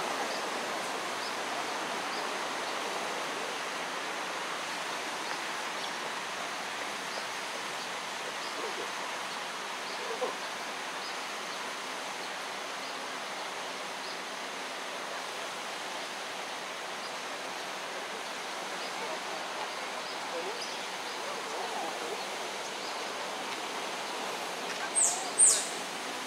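Steady rush of flowing water along a concrete bank. Near the end come two sharp, high chirps, close together, each falling in pitch.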